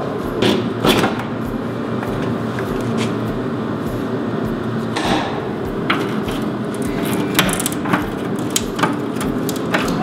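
Ratchet wrench and hand tools working the mounting bolts of a car's heavy rear bumper: irregular metallic clicks and knocks, a few sharper ones spread through, over a steady background hum.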